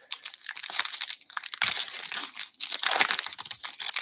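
Foil wrapper of a 2021-22 Upper Deck Ice hockey card pack being torn and crinkled open by hand: a run of crackling and tearing, with a short pause about two and a half seconds in.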